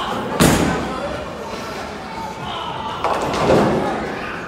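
Ten-pin bowling ball dropped onto the wooden lane with a loud thud about half a second in, rolling down the lane, then hitting the pins about three seconds in with a longer crash of tumbling pins.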